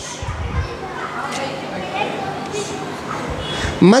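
A low babble of children's voices and chatter in a large hall, with no single voice standing out.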